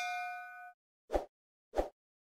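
A notification-bell 'ding' sound effect rings with several clear tones and fades out. It is followed by two short soft pops about two-thirds of a second apart.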